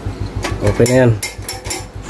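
Several short, sharp metallic clicks and clinks from handling the opened rice cooker's metal body and internal parts, a couple about half a second in and a quick cluster near the end.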